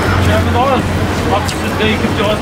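Steady low rumble of a vehicle engine from street traffic, with voices of people talking in the background.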